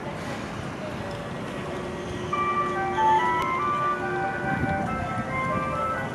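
A simple electronic melody of clear notes stepping up and down in pitch starts about two seconds in and plays on, over steady city-plaza traffic noise.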